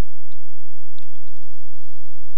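A few computer mouse clicks as a window is grabbed and resized, one about a third of a second in and a cluster around the one-second mark, over a steady low hum.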